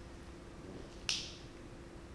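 Quiet room tone, broken about a second in by one short, sharp mouth sound: the lips parting with a smack before she speaks.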